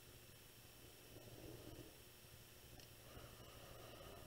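Near silence: room tone with a low hum, and a faint scratch of a pencil drawing a line along a ruler on paper a little over a second in.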